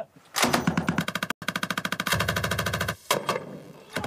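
Sustained-fire machine guns being test-fired in rapid fire: a long stream of closely spaced shots that breaks off about three seconds in.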